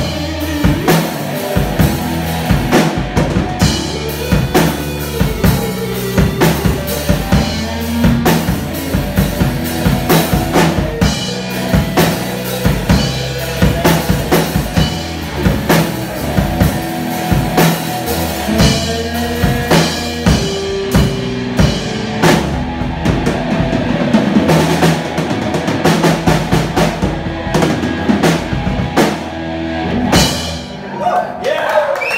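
A live instrumental rock band jamming: a Tama drum kit keeps a steady beat under amplified electric bass and electric guitar.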